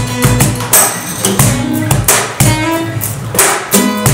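Two acoustic guitars strumming together, with a Gon Bops cajón slapped by hand to keep a steady beat of regular hits.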